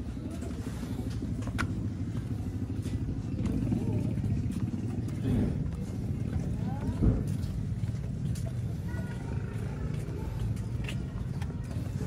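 Outdoor background sound: a steady low rumble with indistinct voices, broken by a few sharp clicks and one louder knock about seven seconds in.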